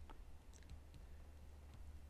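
Near silence: a steady low room hum with a few faint, scattered clicks of a stylus on a pen tablet.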